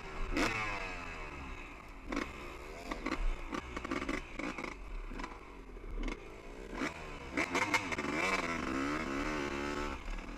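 Two-stroke dirt bike engine revving up and down under the rider's throttle on a rough trail, its pitch falling and rising repeatedly. Sharp knocks and rattles from the bike bouncing over rocks and ruts come through at several points, thickest about seven seconds in.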